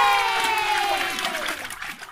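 A long drawn-out cheer of voices, falling slowly in pitch and fading out near the end.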